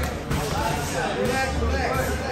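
Indistinct voices of people talking, with music playing in the background.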